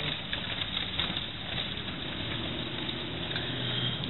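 A car running and rolling along a street, heard from inside the cabin: a steady hum with road noise and a few faint clicks.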